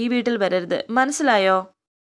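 Speech only: a voice narrating in Malayalam, which stops about three-quarters of the way through, followed by dead silence.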